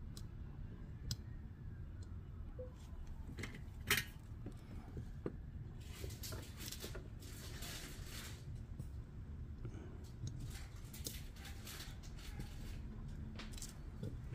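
Small clicks, taps and scratchy handling noises as capacitors are worked into place on a circuit board by hand, with one sharper click about four seconds in. A low steady hum runs underneath.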